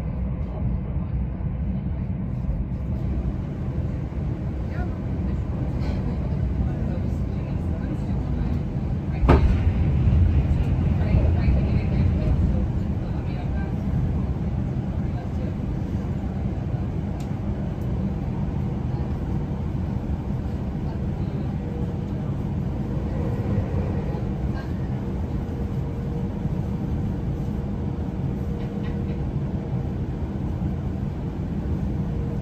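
Cabin of an electric passenger train running at speed: a steady low rumble of wheels on rail. A sharp knock comes about nine seconds in, followed by a few seconds of louder rumble.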